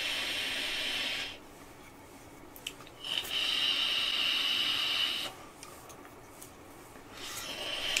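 Draws on a Uwell Crown 3 sub-ohm tank with a 0.25 ohm coil fired at 77 watts: air rushing through the airflow as a steady hiss. There are three draws of about two seconds each, the first ending about a second in, the second in the middle with a high whistle in it, and the third starting near the end.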